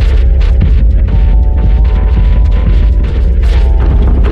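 Loud droning soundtrack: a heavy low rumble under several held tones that step up in pitch about a second in and drop back near the end, with frequent short clicks throughout.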